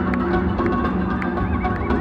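Live band playing loud amplified music, heard from within the crowd: a steady beat under held low notes, with a few short high rising-and-falling notes in the second half.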